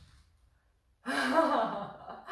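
Near silence for about a second, then a woman's voiced sigh lasting about a second.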